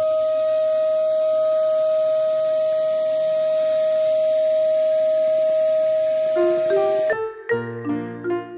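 Bee vacuum's motor running with a steady, high whine over a hiss, then cutting off suddenly near the end. Light, tinkling background music with piano-like notes comes in just before the cut and takes over.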